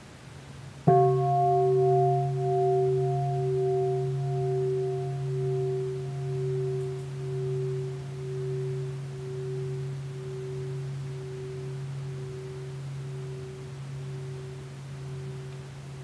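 A large bowl bell (a bell of mindfulness) struck once about a second in, then ringing on with a slow, even pulsing as it gradually fades, still sounding at the end.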